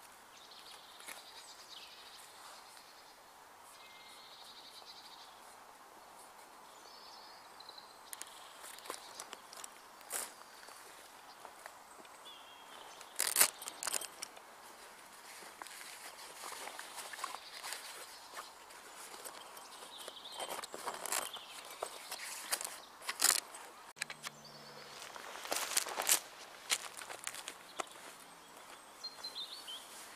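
Heavy canvas of a swag tent being handled: rustling and scraping with scattered sharp knocks, starting about eight seconds in and busiest in the second half, over faint outdoor background.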